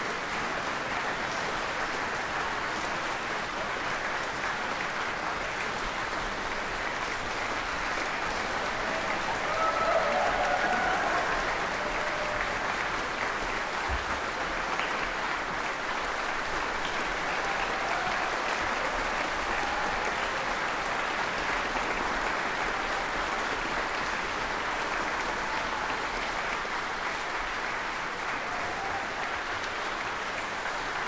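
Audience applauding steadily, swelling briefly about ten seconds in.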